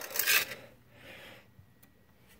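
Small metal sandbox shovel scraping through loose soil substrate in a terrarium: a short scrape at the start and a softer one about a second in.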